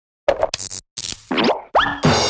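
Cartoon sound effects for an animated logo: a quick run of short pops and clicks, then two sharp upward pitch glides, the second just before the end.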